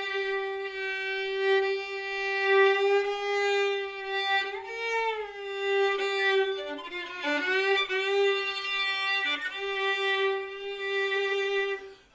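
Violin holding one long bowed note with no vibrato, its pitch steady. About four and a half seconds in the pitch bends up and back, and from about six to nine and a half seconds quick ornamental notes flick around it before it settles back on the same held note.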